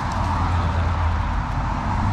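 A car driving by: a steady low rumble of engine and tyre noise that grows slightly louder.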